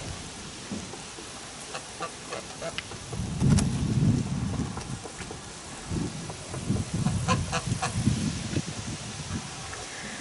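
Strong wind gusting and rumbling on the microphone in surges, with a blizzard-like sound, loudest about three to four seconds in and again from about six seconds. Geese honk faintly in the background.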